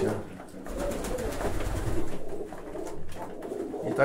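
Domestic pigeons cooing softly in a small enclosed loft.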